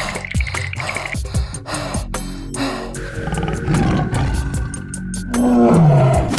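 Cartoon tiger roar sound effect over background music; the roar comes near the end, loud and falling in pitch.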